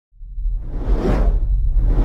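Whoosh sound effect over a deep rumble, from an animated logo intro sting: it rises out of silence, swells about a second in, and a second whoosh begins near the end.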